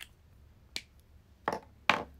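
Three short, sharp clicks or taps, the second and third louder and close together near the end.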